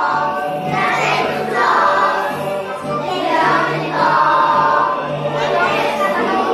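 A group of preschool children singing a Polish patriotic song together in unison, in long sung phrases with short breaks between them.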